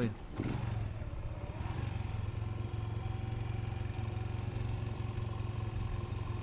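Motorcycle engine running at a steady, low hum while the bike rolls slowly down a narrow lane, heard from a camera mounted on the bike.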